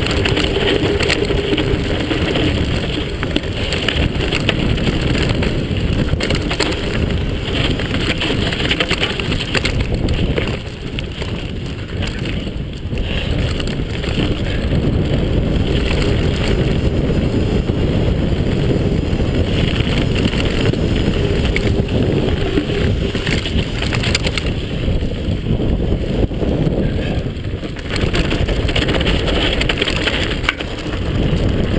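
Wind rushing over the microphone, mixed with the rumble and rattle of a mountain bike rolling fast down a rough dirt and stone trail. The sound dips briefly twice.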